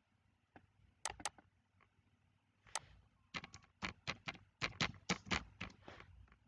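A few separate computer mouse clicks, then a quick run of about ten keystrokes on a computer keyboard in the second half.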